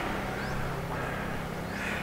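Outdoor street background: a steady low mechanical hum, with two faint, short rising chirps, one about half a second in and one near the end.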